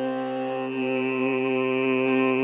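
Carnatic classical music: a male vocalist holds one long, steady note with a violin shadowing it, and the pitch begins to waver gently near the end. The mridangam strokes stop for the length of the held note.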